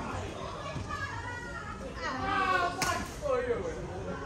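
People's voices echoing in a large indoor badminton hall, loudest in the second half, with one sharp smack of a badminton racket hitting a shuttlecock a little under three seconds in.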